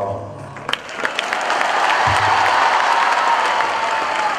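An audience applauding. The clapping starts about a second in, right after the speaker's last words, then swells and keeps going.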